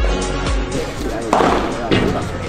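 Background music with a steady beat, which gives way under a second in to live sound from a padel court. About halfway through comes a sudden loud burst, followed by excited shouting voices.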